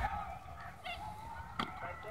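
A brief, high-pitched shouted call from a young voice a little under a second in, then a single sharp knock, against a quiet open-field background.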